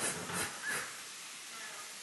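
A toddler's faint, breathy puffs of air, a few short ones in the first second, as he tries to blow.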